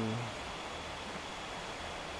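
Steady outdoor background hiss with no distinct events, after the tail end of a spoken 'um' at the very start.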